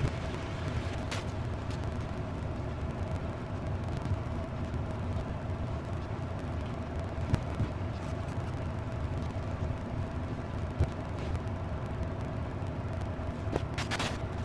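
Steady low room rumble with a faint constant whine underneath. A few soft, brief crinkles and taps come through it as cats move in crumpled paper packing material.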